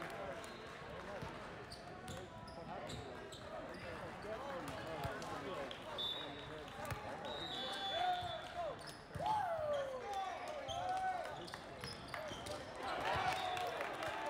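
Large-hall volleyball court ambience: many overlapping voices and calls, with a few louder calls partway through, and a volleyball thudding as it bounces on the court floor.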